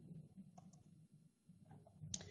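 Near silence: room tone, with two faint clicks about a second apart.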